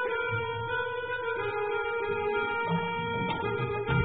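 A small live band playing an instrumental tune, led by plucked strings over steady held notes.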